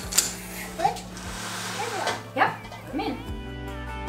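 A single sharp knock just after the start, a peeled hard-boiled egg dropped into a glass jar, then short wordless voice sounds. Soft background music comes in about three seconds in.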